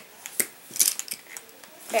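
Makeup items being picked up and handled: a few sharp clicks and light clatter in the first second, then quieter rustling.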